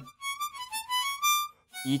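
Hohner diatonic harmonica playing a short run of high single notes that dip in pitch and climb back, breaking off about a second and a half in.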